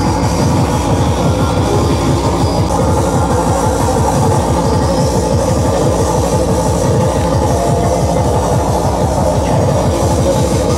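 Loud electronic dance music played by a DJ over a sound system, a fast steady beat with heavy bass.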